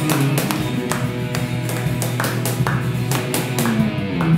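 Live band music with electric and acoustic guitar over a steady, evenly spaced percussive beat.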